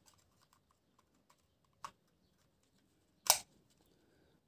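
Small plastic clicks and taps from handling a Syma toy quadcopter as its camera module is clicked into the body, with a louder single snap about three seconds in.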